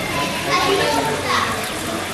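Children's voices chattering and calling out over a background of crowd talk, louder in short spells.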